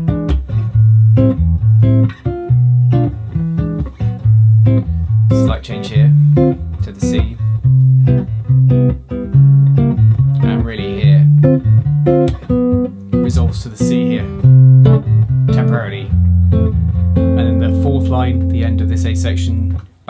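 Gibson archtop jazz guitar comping in a bossa nova style, with alternating bass notes under jazz chords moving through A-minor changes. Near the end one chord is left ringing for about four seconds.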